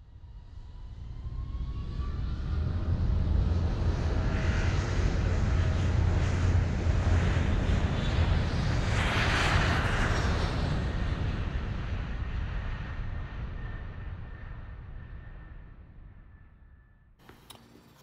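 Airplane engine noise that swells up from silence over the first few seconds, is loudest around the middle, and then slowly fades away.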